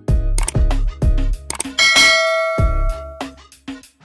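Background music with a beat. About two seconds in, a bright bell ding rings for about a second: a notification-bell sound effect.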